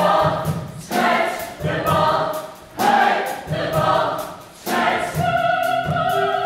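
Choir singing in short, loud phrases that each start abruptly and fade, settling into a held chord about five seconds in.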